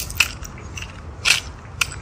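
Footsteps crunching on a gritty paved path: a few irregular crunches over a steady low rumble.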